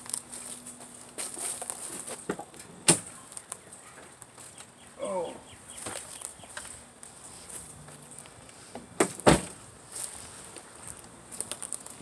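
Handling noises at an SUV's open rear door as a plastic crate is lifted out: two sharp knocks, about three seconds in and about nine seconds in, with lighter clicks and clatter between them.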